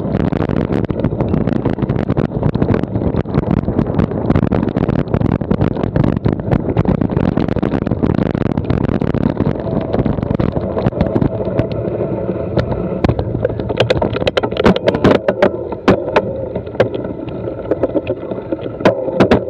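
Bicycle rolling fast over a loose, stony gravel track: tyres crunching on the stones, the bike and camera mount rattling, and wind on the microphone. About two-thirds of the way through a steady whirring tone joins in, and sharp knocks over bumps come near the end.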